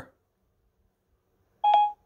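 Near silence, then about three-quarters of the way in a single short electronic beep from Siri on an iPad, the tone it plays on finishing listening just before it speaks its answer.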